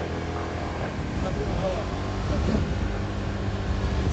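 Motor scooter engine running steadily while riding along a street, with a low, even drone from engine and road.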